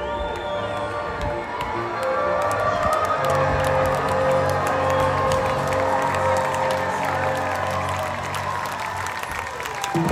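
Live orchestra and band playing long held chords, with the crowd cheering and clapping over the music from about two seconds in.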